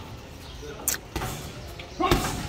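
Boxing gloves striking a hanging heavy bag: a sharp smack a little under a second in, followed quickly by a duller thud.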